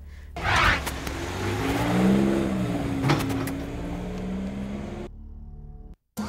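A sweeping whoosh, then a vehicle engine sound that holds for about four seconds, its pitch rising slightly and falling back. It drops off a little after five seconds.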